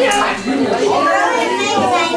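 Overlapping chatter of many children and adults talking at once, with no single voice standing out.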